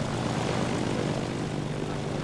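Propeller airplane engines running steadily, an even hum with hiss on top.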